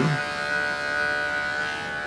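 Electric pet hair clipper running with a steady hum while it cuts the thick hair around a poodle's ear.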